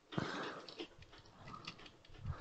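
A soft breath at the microphone, followed by a few faint computer keyboard clicks as undo is pressed repeatedly.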